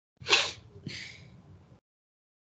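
A person sneezing once: a sharp, loud burst, then a softer second burst about half a second later, both starting and stopping abruptly.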